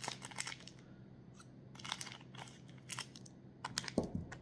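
Scissors snipping through a plastic Oreo biscuit wrapper while the wrapper crinkles, in three short runs of sharp snips and crackles.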